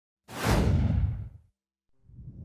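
Whoosh sound effect for an intro logo animation: it starts abruptly with a deep rumble under a rushing hiss that sinks in pitch, then dies away after about a second.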